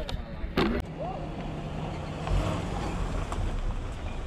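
Suzuki Vitara 4x4's engine running at low revs as it crawls over a steep dirt bank. The engine gets a little louder just past the middle.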